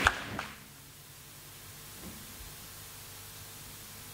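A sharp click at the very start, then the faint steady hiss of an open microphone and sound system, with two soft thumps about two seconds in.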